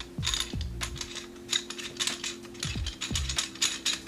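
Threaded rails of a camera shoulder rig being screwed by hand into the next rail sections: a run of irregular quick clicks and scrapes from the threads turning, with low handling knocks.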